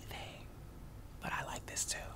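Faint whispering: a few short breathy whispered sounds, clustered about a second and a half in.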